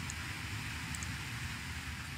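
Room tone: a steady hiss with a low electrical hum, with two faint small clicks about a second in.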